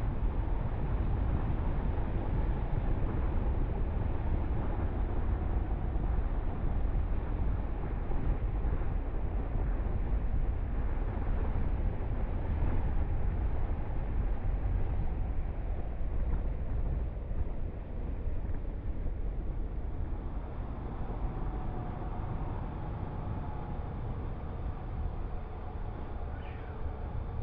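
Steady wind rushing and buffeting on the microphone of a moving bike camera, with a low road rumble underneath. It eases a little in the second half.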